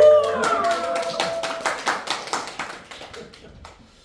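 A small audience clapping, loudest at the start and thinning out over a few seconds, with a few voices calling out over the first second or so.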